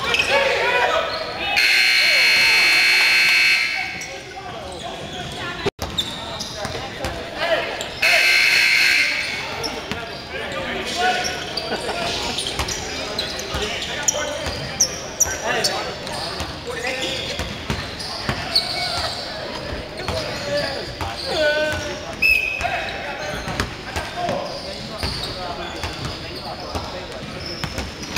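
Gym scoreboard buzzer sounding two loud, steady blasts: a long one of about two seconds near the start, and a shorter one of about a second some six seconds later, signalling a stoppage in play. Then basketball dribbling, sneaker squeaks and players' voices echo in a large gym.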